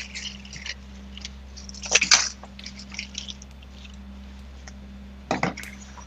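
Rustling and scraping of clothing against a body-worn camera's microphone, with two louder scrapes about two seconds in and again past five seconds, over a steady low hum.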